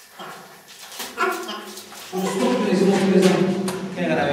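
A person's voice: a brief vocal sound about a second in, then a louder held vocal sound through the second half.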